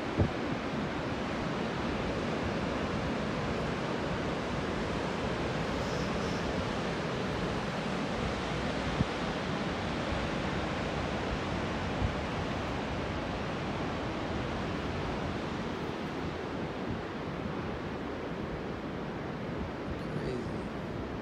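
Steady rushing wash of breaking ocean surf mixed with wind, with two brief knocks about nine and twelve seconds in.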